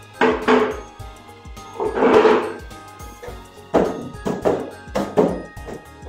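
A tape-wrapped rubber balloon bouncing on a hard floor as it is dribbled: a string of dull thumps at uneven spacing. Background music plays under it.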